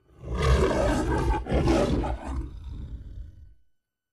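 The MGM studio logo's lion roar: two roars in quick succession, the second trailing off about three and a half seconds in.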